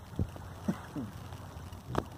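Steady low rumble of a small fishing boat on the open sea, with wind on the microphone. A few brief pitched sounds slide downward partway through, and another rises near the end.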